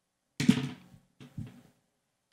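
Spitting chewing-tobacco juice into a plastic bottle: two short wet mouth bursts, the first about half a second in and the louder of the two, the second weaker about a second later.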